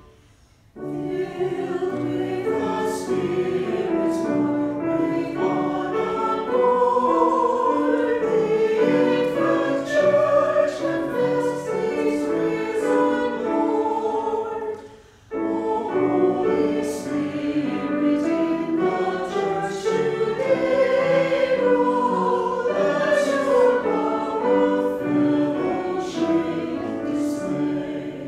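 Mixed church choir singing a hymn with piano accompaniment. It starts about a second in, breaks off for a moment about halfway through, then goes on.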